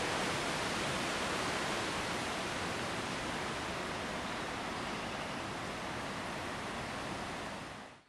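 Steady, even hiss with no other sound in it. It fades out shortly before the end.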